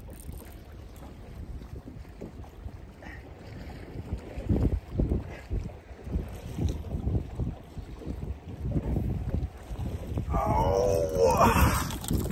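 Wind buffeting the microphone over choppy water, with small waves slapping the hull of a bass boat and a few dull knocks about four to five seconds in.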